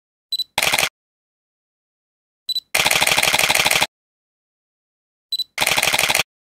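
Camera sound effect: a short high focus-confirm beep followed by a rapid burst of shutter clicks, heard three times. The first burst is brief, the second lasts about a second, and the third is brief again.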